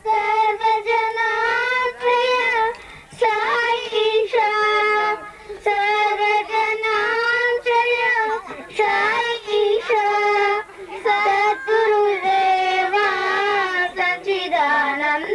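Young girls singing a Hindu devotional bhajan into a microphone in a high voice, a flowing melody of long held notes with short breaks for breath.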